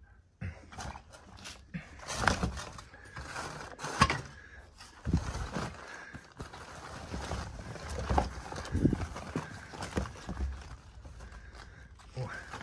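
Zucchini being tipped out of a fabric bag onto a concrete floor: irregular knocks and several heavier thuds as they drop and roll, with rustling of the bag.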